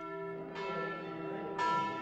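Church bells ringing, with new strikes about half a second in and again near the end, their tones hanging on in between.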